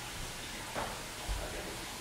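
Quiet room tone: a steady low hiss, with one soft low bump a little past the middle.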